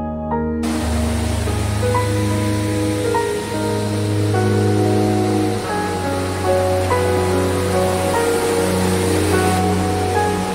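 Background music with slow, held notes over the steady rush of a mountain stream and waterfall, the water sound coming in about half a second in.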